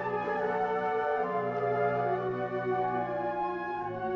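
Flute choir playing sustained chords, with low flutes holding long notes beneath the higher parts.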